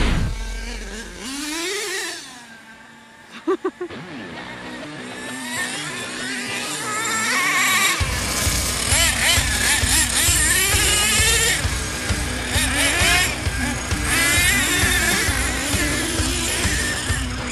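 Small nitro RC truck engines revving up and down under a rock music track. The music thins out in the first seconds and comes back with a heavy beat about halfway through.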